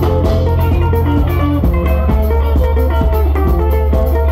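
Live band playing Zimbabwean sungura: fast picked electric lead guitar lines over a bass line and a drum kit keeping a steady beat.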